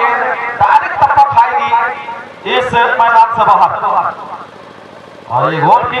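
A man's commentating voice, speaking in bursts, with a short pause about four seconds in.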